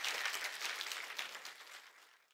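Audience applauding, a dense patter of many hands clapping that dies away toward the end.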